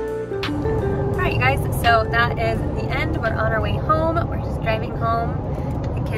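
Steady low road rumble inside a car's cabin at highway speed. A young child's high voice vocalizes over it several times without words. A gentle guitar tune cuts off just at the start.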